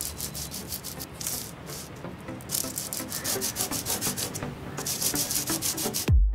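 Hand sanding of carved wood: an abrasive scrubbed back and forth in quick strokes over the floor of a carved recess, smoothing it in the finishing stage of the carving. The strokes come thicker and louder in the second half.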